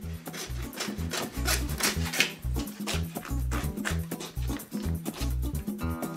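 Hand bone saw rasping back and forth through beef rib bones, at roughly two to three strokes a second, over background music with a steady bass beat.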